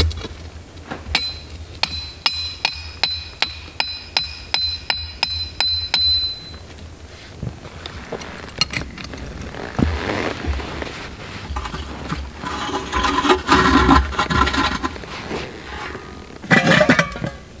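Metal clicking quickly and evenly, about three clicks a second with a faint ringing tone, for the first several seconds; then metal scraping and clinking, loudest shortly before the end.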